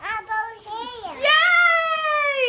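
A young child's voice: short calls, then about a second in one long high held note that slowly falls in pitch.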